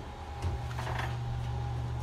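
Steady low hum of an oven with its door open, with a couple of faint knocks as an oven-mitted hand reaches in toward a metal cake pan on the rack.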